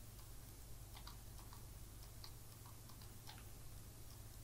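Faint, irregular clicking of a computer mouse, about eight clicks spread over a couple of seconds, over a low steady hum.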